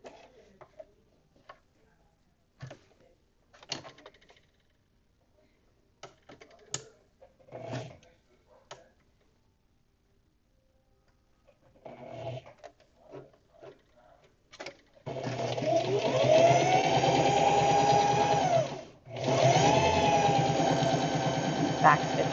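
Scattered small clicks and rustles of fabric and the machine being handled. About 15 seconds in, an electric sewing machine starts stitching, its motor whine rising in pitch as it speeds up. It stops briefly about four seconds later, then runs again.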